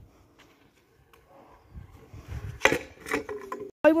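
Stunt scooter clattering on an asphalt road: low rumbling, then a few sharp knocks from about two and a half seconds in.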